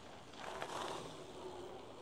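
Mountain bike tyres rolling down a dirt-and-gravel track, a faint rush that swells about half a second in and fades again.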